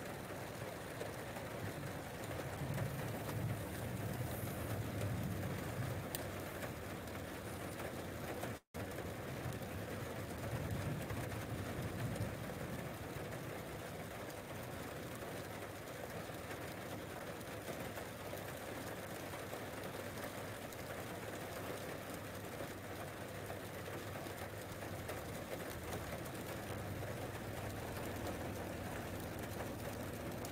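Distant thunder rumbling low, swelling twice in the first twelve seconds, over a steady hiss.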